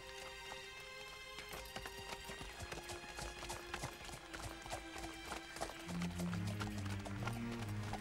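Cartoon sound effect of horses galloping, a run of rapid hoofbeats, over background music of held notes that gains lower notes about six seconds in.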